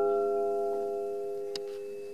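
Closing chord of a milonga on a classical guitar, left ringing and slowly dying away. A faint click sounds about a second and a half in.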